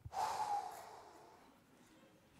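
A person's sharp, breathy exhale with a short voiced edge, starting suddenly and fading over about a second.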